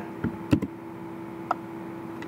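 A few short sharp clicks from a computer mouse and keyboard: a faint one at the start, a close pair about half a second in and one more in the middle. They sit over a steady low electrical hum.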